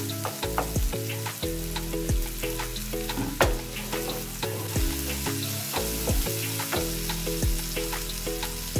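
Sliced onions and green chillies sizzling in hot oil in a frying pan, stirred with a wooden spatula that knocks and scrapes against the pan. Background music with a steady bass line plays underneath.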